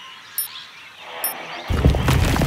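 Cartoon sound effect of a huge boulder starting to roll: a brief hush with a couple of faint high ticks, then a loud low rumble that sets in suddenly near the end, under music.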